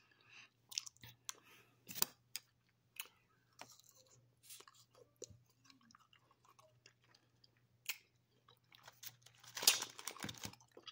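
Close-up chewing and crunching of frozen, jello-coated grapes: irregular crisp crunches and small bites, growing louder in a cluster near the end.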